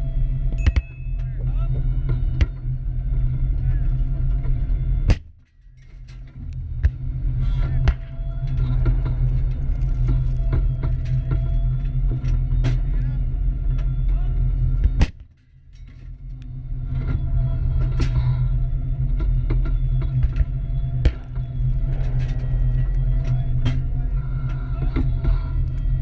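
Armoured tank running along a track, a loud, steady low drone of engine and running gear. It is broken twice, about five and fifteen seconds in, by a sharp crack, after which the sound drops away and swells back over a couple of seconds.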